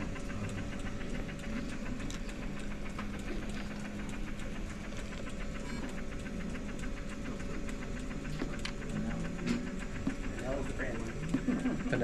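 Bunnell Life Pulse high-frequency jet ventilator running, its pinch valve in the patient box pulsing at a set rate of 420 breaths a minute, a rapid even rhythm over a steady hum.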